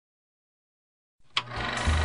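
Silence for just over a second, then a hiss, a single sharp click, and low bass notes as the big-band swing accompaniment starts.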